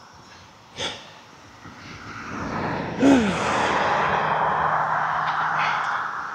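Road traffic passing on the road alongside. Tyre noise builds for a couple of seconds, a vehicle goes by about three seconds in with a falling pitch, and steady tyre and engine noise holds after it.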